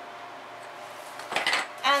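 A brief clatter of hard objects about a second and a half in, as small toy cars are handled and set down on a kitchen counter.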